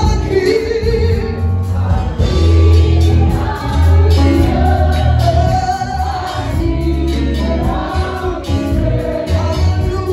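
Live gospel worship music: several singers on microphones over a band with guitars and keyboard, with a strong bass underneath.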